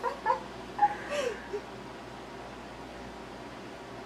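A few brief, soft vocal sounds as laughter dies away in the first second and a half, then quiet, steady room tone.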